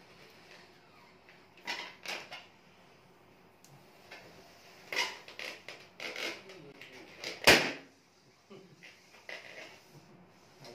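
Rubber balloons being blown up by mouth: short, forceful puffs of breath pushed into the balloons in groups of two or three. Near the end comes one much louder, sharp burst.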